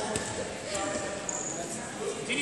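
Indistinct voices echoing in a large sports hall during a wrestling bout, with a knock early on and a brief high squeak partway through.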